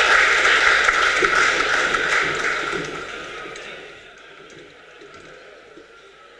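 Audience applauding in a large tent, the clapping fading out about three to four seconds in.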